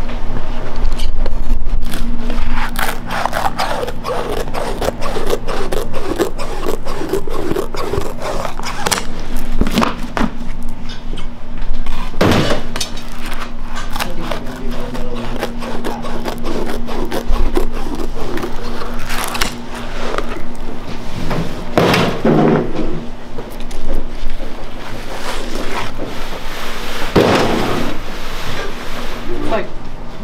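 A knife scraping and cutting through setting peanut brittle on a marble slab, with scattered scrapes and knocks, a few of them sharp and loud, over steady background music.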